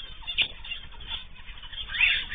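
Cage birds in an aviary chirping and calling on and off, with one louder, sharp note about half a second in.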